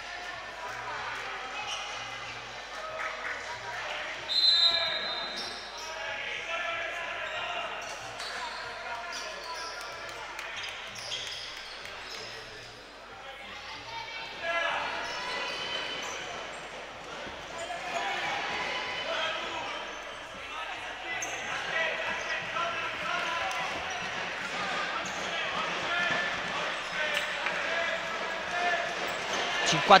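Voices of players and spectators talking in an echoing sports hall, with one short, high whistle blast about four seconds in.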